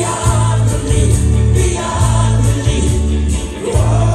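Live rock band playing at full volume: a male lead vocal over electric guitar, keyboards, a heavy bass line and drums with cymbals, heard from the audience.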